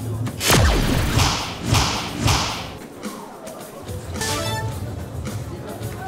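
A soft-tip dart strikes the electronic dartboard about half a second in, scoring a triple 15, followed by a run of three bright electronic sound effects from the dart machine. About four seconds in, a second, tuned electronic jingle from the machine marks the end of the turn.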